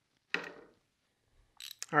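A plastic coffee container set down with a single light knock, followed near the end by a few faint small clicks.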